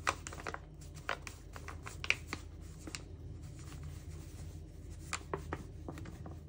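Paper flour bag crinkling and rustling as flour is poured from it into a bowl, in scattered short rustles that are busiest at the start and about two seconds in, with a few more near the end.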